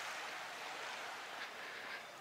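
Low, steady hiss of small waves washing on a sandy beach.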